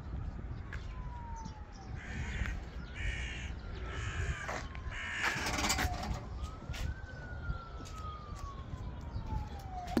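Crows cawing several times, mostly in the middle of the stretch, over a faint distant siren whose single tone falls slowly, rises quickly, and falls again, three times over.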